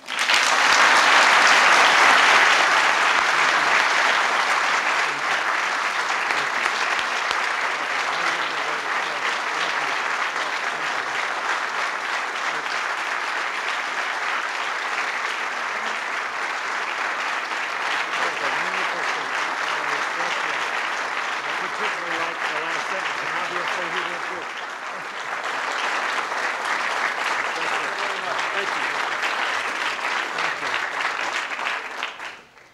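Audience applauding, loudest in the first few seconds, easing slightly and dipping briefly about 24 seconds in before picking up again.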